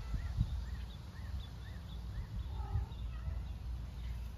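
A small bird repeating a short high chirp about twice a second, with another call near the end. Wind rumbles on the microphone underneath.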